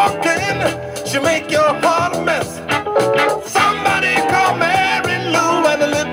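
Early-1970s jazz-funk band recording: tight drums, bass and guitar under a pitched lead line that slides up and down, played from a vinyl record.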